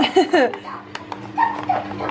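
A few brief whining vocal sounds, falling in pitch, in the first half second, then soft clicks of packaging being handled over a faint steady hum.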